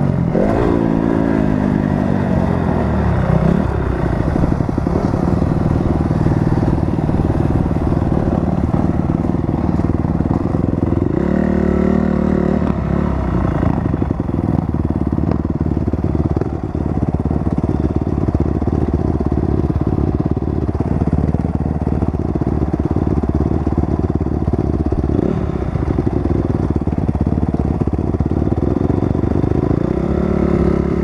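Dirt bike engine revving up and down through the first few seconds, with another burst of throttle about eleven seconds in, then running at low revs as the bike rolls slowly.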